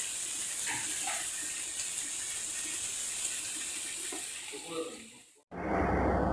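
Spiced masala frying in oil in a steel kadai: a steady sizzling hiss with a few faint ticks, fading away and cutting off about five seconds in.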